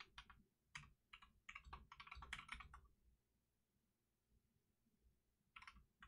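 Typing on a computer keyboard: faint, quick runs of keystrokes for about the first three seconds, a pause, then a few more keystrokes near the end.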